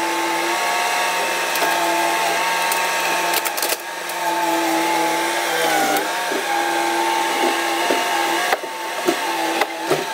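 Bobcat compact track loader's engine and hydraulics running at a steady pitch that dips briefly about six seconds in, as the bucket pushes a concrete slab. Scattered knocks and scrapes of concrete and debris sound over it.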